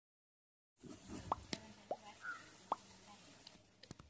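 Three faint, short rising plops like water drops, a little under a second apart, with a few sharp clicks in between.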